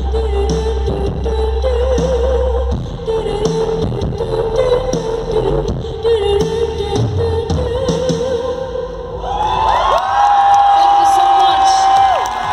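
The closing moments of a live rock song with the crowd cheering and clapping. A wavering held note runs under the noise, and about nine seconds in a long held note glides up and sustains to the end.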